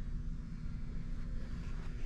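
Steady low background hum of a large indoor room, with no distinct sound event.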